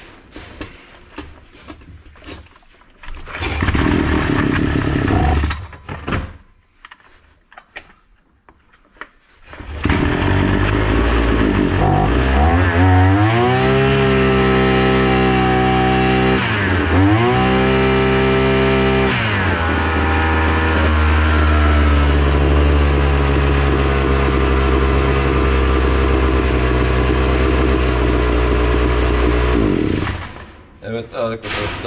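Datsu TR550 backpack brush cutter engine: a short burst of running that cuts out, then about ten seconds in it starts and keeps running. It is revved up twice with a sharp dip between, then drops back to a steady idle, run to check its engine speed after repair.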